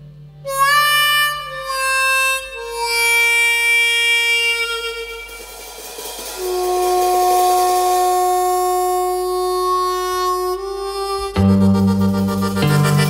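Music: a harmonica plays a few slow, long held notes, sliding up into the first, over little else. Near the end the band comes back in with a loud low chord.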